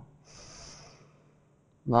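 A person's audible inhale, a soft hiss lasting about a second, taken on a "long inhale" cue in a seated forward fold. Speech starts again near the end.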